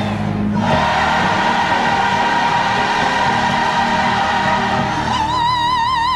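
Gospel choir singing, with one long high note held from just under a second in; the note holds steady, then wavers with vibrato near the end.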